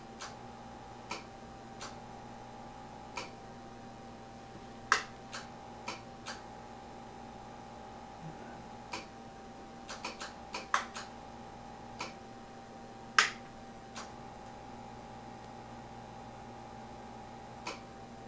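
Irregular sharp clicks from the Drake L-4B linear amplifier's front-panel controls being worked by hand, the rotary meter-selector switch among them, over a steady faint hum with a thin high tone. The loudest clicks come about five and thirteen seconds in.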